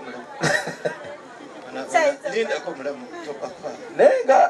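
A woman speaking briefly and laughing into a microphone over the chatter of a crowd.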